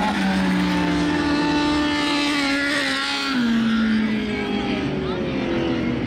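Several midget race car engines running at steady, moderate revs after the race finish, one passing close by. The main engine note drops a step a little over three seconds in.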